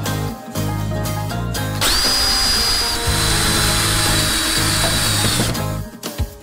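Power drill boring a hole into a plywood board through a drill guide, running for about three and a half seconds from about two seconds in; its high whine drops a little in pitch partway through as the bit bites. Background music plays throughout.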